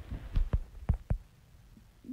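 About five short, low thumps and bumps in the first second, with the loudest near the end of them: handling noise on a phone's microphone as the phone is moved.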